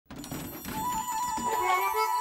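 Instrumental background music starting from silence and growing louder, with held melodic notes coming in about a second in.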